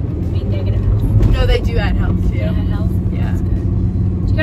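Steady road and engine noise inside a moving car's cabin, with a few brief spoken words over it about a second in.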